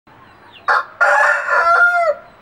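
A sanda kozhi gamecock crowing: a short first note about two-thirds of a second in, then a long drawn-out crow that drops in pitch at its end.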